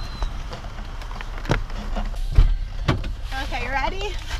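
Knocks and clunks of a car door and a camera being handled around it: a few sharp knocks and a heavier low thump about two and a half seconds in. A voice briefly joins near the end.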